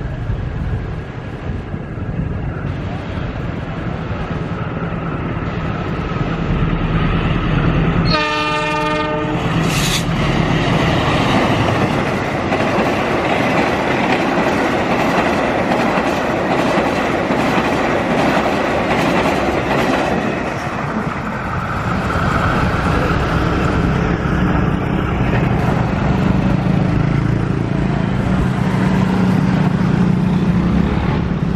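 Indonesian diesel-electric locomotive hauling a passenger train, its engine rumbling as it approaches. About eight seconds in it sounds one horn blast of about a second and a half. The coaches then run past close by with loud wheel-on-rail noise for about ten seconds.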